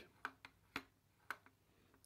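About five faint, irregularly spaced clicks of plastic and metal parts as an Opel Astra H power folding mirror housing is turned by hand on its folding mechanism.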